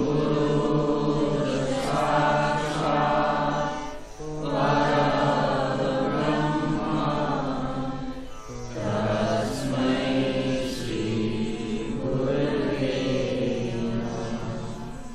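Devotional mantra chanting with long held notes, in three phrases of about four seconds each, with short breaks about four seconds in and about eight and a half seconds in; the last phrase sits lower in pitch.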